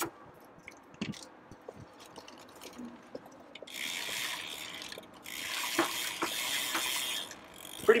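Soapy sponge scrubbing a bicycle chain and rear derailleur: two stretches of wet rubbing hiss starting about halfway through, over light clicking from the drivetrain as the cranks are turned.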